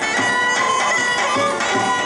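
Traditional Macedonian folk dance music, a wind instrument playing a melody over held steady tones, with soft low beats underneath.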